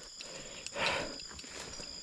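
Crickets shrilling steadily in the grass at night, with one short soft rustle about a second in.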